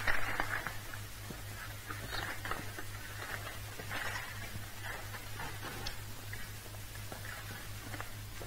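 Faint shuffling steps and scattered light knocks of people moving about on a studio stage floor, over a steady low mains hum from the old recording.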